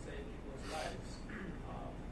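A man's voice speaking in short phrases over a steady low hum.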